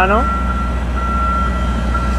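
Motion alarm of a JLG 1350SJP self-propelled boom lift as it drives: a high electronic beep, almost continuous with short breaks, over the low drone of its diesel engine.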